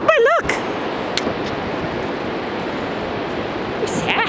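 Steady rushing wash of surf at the beach. It opens with a brief high two-note vocal sound.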